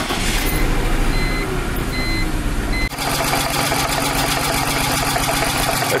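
BMW M52TU inline-six starting and running, heard first from inside the cabin with a few short dashboard beeps, then from the engine bay at idle with an even pulsing about halfway through. The engine is running rough with a leftover noise, which the owner later traces to a loose spark plug in cylinder five leaking compression, while cylinder two is not firing.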